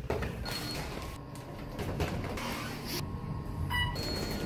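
Elevator call button pressed, with a short high beep about half a second in; near the end a brief ringing chime of the kind an elevator gives on arrival.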